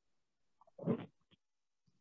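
Near silence on a video-call line, broken about a second in by one short vocal sound lasting under half a second, followed by a faint click.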